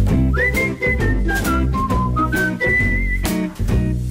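Upbeat theme music: a whistled melody with a quick slide up about a third of a second in, over a bass line and a steady beat.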